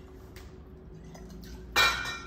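Liqueur poured faintly from a bottle into a metal cocktail jigger, then a single sharp, ringing clink of metal barware near the end as the jigger meets the shaker tin.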